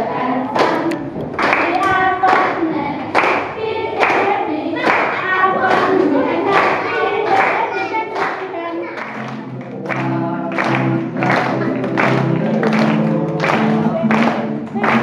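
A group of schoolchildren singing together while clapping a steady beat, a little more than one clap a second. Lower held notes join in about nine seconds in.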